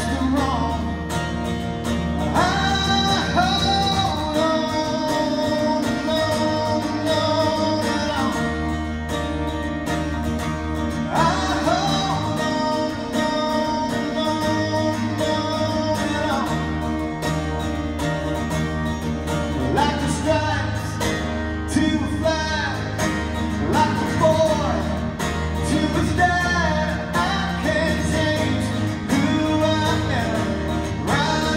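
Live acoustic country song: acoustic guitars strummed under sung vocals.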